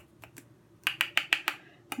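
Light, sharp clicks of a makeup brush being tapped and worked against a jar of mineral foundation powder as the brush is loaded. A few faint taps come first, then a quick run of about six in the middle.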